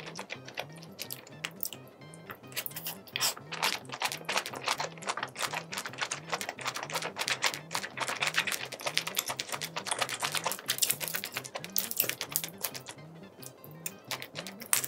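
Close-miked eating sounds: rapid wet clicks and smacks of chewing spicy sauced seafood, thickest in the middle. Under them runs quiet background music with a steady low beat about twice a second.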